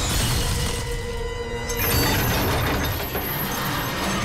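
Action-film fight scene soundtrack: music mixed with crash and impact sound effects, the sound changing sharply a little under two seconds in.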